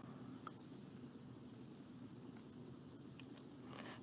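Faint scratching of a pencil writing short handwritten words on thick paper.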